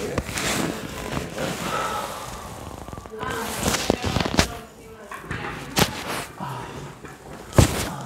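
A chiropractic neck adjustment: quiet rustling of hands and body on the vinyl treatment table, with a few short sharp clicks. The loudest, near the end, fits the pop of the cervical spine joints being manipulated.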